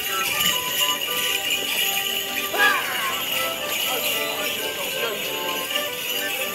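Morris dancers' shin bell pads jingle steadily as they step, over a dance tune played on a squeezebox.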